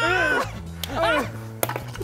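Background music with a steady bass line under two or three sharp clacks, near the middle and later on, of knee-hockey sticks striking a plastic puck on a wooden floor.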